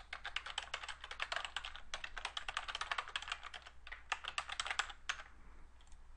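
Typing on a computer keyboard: a quick run of key clicks, stopping about five seconds in.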